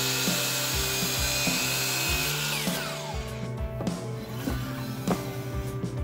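DeWalt miter saw crosscutting a solid walnut board: a steady motor whine over the noise of the blade in the wood. About two and a half seconds in the motor is switched off and its pitch falls away as the blade spins down.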